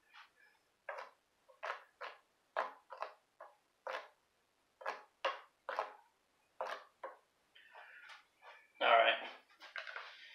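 A man making a string of short vocal sounds that are not words, roughly one or two a second, like humming or scatting a beat under his breath.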